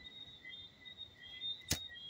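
A lighter struck once with a single sharp click near the end, against faint steady high-pitched background chirping.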